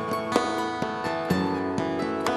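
Live country band playing a slow passage between vocal lines: picked acoustic guitar notes, about two a second, over held chords.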